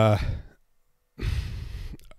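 A man's drawn-out "uh" trailing off, a short pause, then a long audible breath, a sigh close on the microphone, just before he speaks again.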